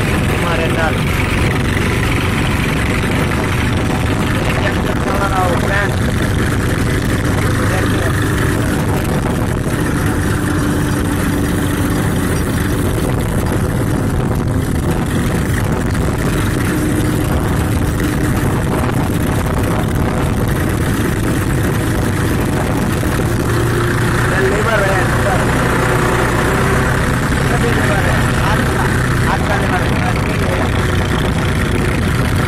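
Old tractor's diesel engine running steadily and loud as the tractor drives.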